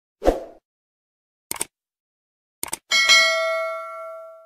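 Subscribe-button sound effects: a short pop, then two quick mouse clicks about a second apart, then a bright notification-bell ding that rings on and fades.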